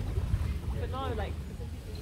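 Background voices of people in and around a pool, with one short call about a second in, over a steady low rumble of wind on the microphone.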